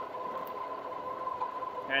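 Rad Power Bikes RadMini Step Thru e-bike running at about 22 mph: a thin, steady whine from the rear hub motor over an even hiss of tyres and wind.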